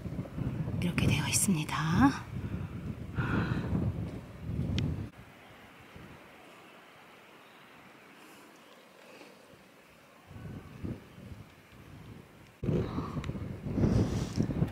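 Indistinct low voice or whispering over rumbling handling noise on the microphone for the first few seconds, then a quiet stretch of faint outdoor background with a few soft sounds, louder again near the end.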